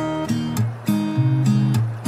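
Background music: acoustic guitar strumming chords, the chord changing every half second or so.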